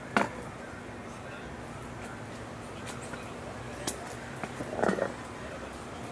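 Indistinct background voices over a steady low hum, with a single sharp knock just after the start and a brief, louder voice-like sound about five seconds in.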